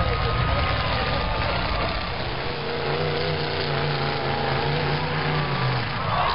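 Demolition derby cars' engines running and revving in the arena, a continuous heavy rumble with a wavering pitch, under a mix of voices.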